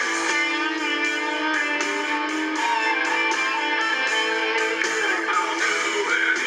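Blues-rock band recording with electric guitar to the fore, its notes held and bent over a steady drum beat.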